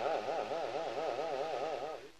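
A male dengbêj singer's voice holding a long final note with a fast, even vibrato, dying away at the end.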